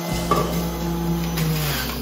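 Electric centrifugal juicer running with a steady motor hum as chunks of apple and pear are fed down the chute and pressed with the pusher. The motor's pitch sags briefly near the end under the load of the fruit, then picks up again.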